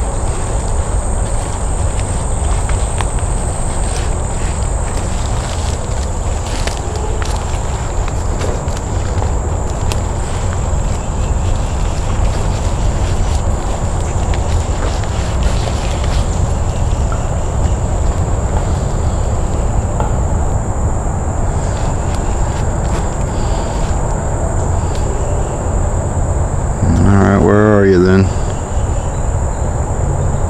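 Steady high-pitched drone of an insect chorus, over a constant low rumble. Near the end a short, wavering voice sound lasting about a second stands out as the loudest thing.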